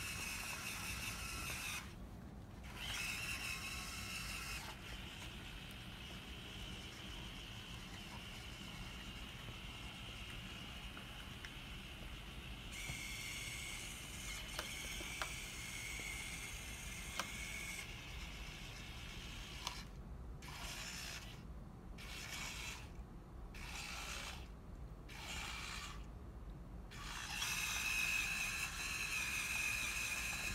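Hobby servo motors of a small wheeled robot whining as they drive it, running in stop-and-start spells. Later on they move in a string of short bursts about a second apart, then run longer near the end, with a few faint clicks in between.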